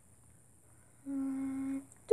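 A person humming one steady, level note for under a second, starting about halfway in after near silence.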